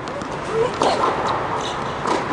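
Tennis ball struck by racket on an indoor court: a few sharp hits over a steady hall noise, with a short rising squeak about half a second in.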